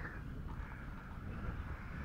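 Wind buffeting the microphone: a steady low rumble with a faint hiss.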